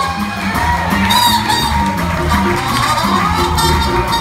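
Live jazz quartet playing: trumpet over piano, upright bass and drum kit, with some audience cheering mixed in.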